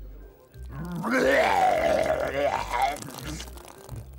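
A man vomiting: one long voiced retch with a gushing noise, starting about half a second in and trailing off about three seconds in, over low background music.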